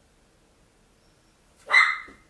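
A single short, sharp animal cry near the end, loud against an otherwise quiet room with a faint steady hum.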